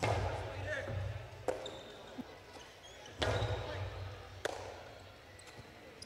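Jai-alai pelota striking the walls and floor of the fronton: two loud cracks about three seconds apart, each with a booming echo that dies away, and a lighter knock after each.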